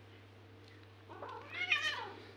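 A domestic cat meowing once, starting about a second in: a drawn-out call that rises in pitch and is loudest near the end.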